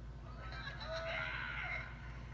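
Crowd cheering with high, drawn-out whooping shouts that build about half a second in, heard through a television's speaker over a steady low hum.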